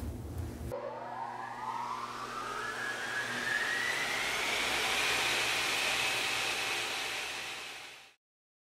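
Rising whoosh sound effect under an animated logo: a swell of airy noise with a tone gliding upward, building for several seconds, then fading and stopping near the end.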